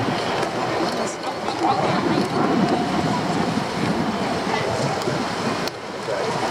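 Steady rushing of water and wind around a small boat moving over choppy sea, with a low rumble under it.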